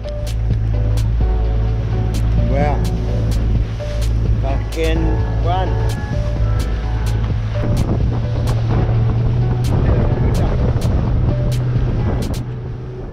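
Outboard motor of a small boat running steadily at speed, a loud low drone. Over it plays music with a regular beat of about two ticks a second and a voice.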